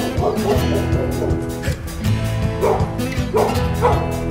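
Background music with a steady beat. A dog barks about three times in the second half.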